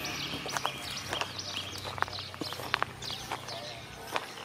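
Outdoor animal calls: many short, high chirps overlapping, with a few sharp clicks around the middle, over a low steady hum that fades out late on.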